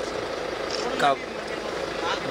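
Steady background noise with a faint constant hum, broken by one short word from a man about a second in.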